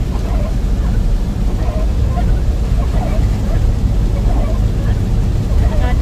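Steady low rumble of a car being driven on a wet road, heard from inside the cabin: engine and tyre noise.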